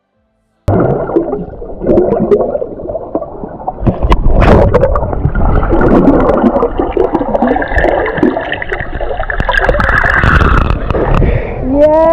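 Seawater sloshing and gurgling around a waterproof action camera held at the surface and then under water, a muffled rushing wash with a low rumble.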